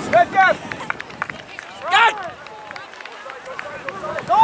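Distant shouted calls from people on a youth soccer field. Two short shouts come at the start and a louder, longer one about two seconds in, with scattered small knocks between them.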